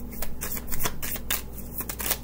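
A deck of tarot cards being shuffled by hand: a quick, irregular run of papery crackling clicks as the cards slide and flick against each other.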